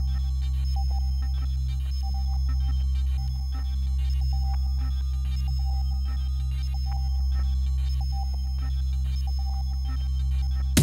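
Synthesizer drone: a steady low bass tone held throughout, with short high electronic blips scattered over it. It is a sparse, beatless passage of live hardware-synth darkwave.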